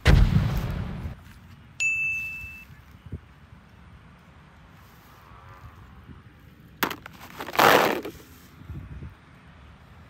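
Edited-in cartoon sound effects: a noisy splash-like burst with a low thump at the start, a bright single ding about two seconds in, then a sharp click and a second burst near the eight-second mark.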